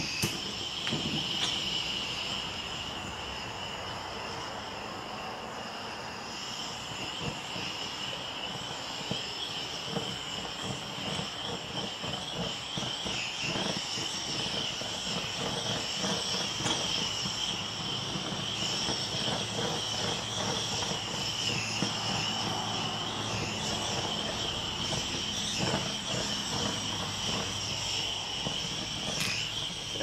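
Handheld butane blowtorch burning steadily, a continuous high-pitched hissing flame with faint scattered crackles, played over wet acrylic pour paint.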